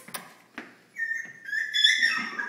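A puppy whining: a longer high-pitched whine, falling slightly in pitch, through the second half, after a couple of short clicks at the very start.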